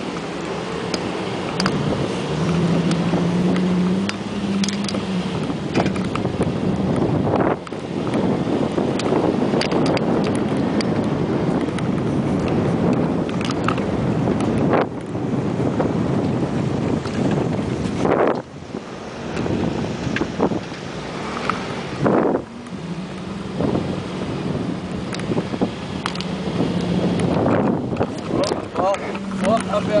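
An off-road 4x4 driving over a rough sand track, heard from the vehicle: a steady engine hum with tyre and wind noise, and a few sudden jolts.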